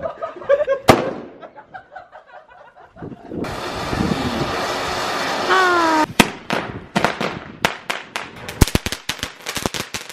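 Leftover New Year's fireworks going off on pavement: a sharp bang about a second in, then a steady hissing spray from about three and a half seconds, followed by a quick irregular run of crackling pops over the last four seconds.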